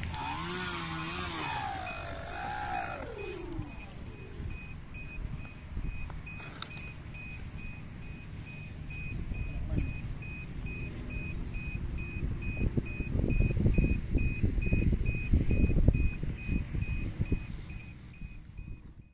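Twin electric motors of an RC plane whining and winding down in pitch over the first few seconds. A rapid, regular electronic beeping, about three beeps a second, runs throughout. In the second half come louder rustling and knocking as the plane is handled.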